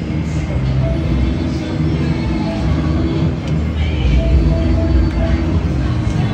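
Casino floor din: a steady low hum of machines and people with background music, and a few short electronic beeps from the gaming machines.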